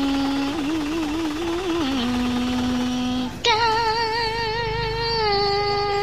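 A voice chanting Hòa Hảo scripture verse in a drawn-out sung style, holding each syllable as a long note with wavering vibrato. A new, louder and higher note starts about three and a half seconds in. A low rumble sits underneath.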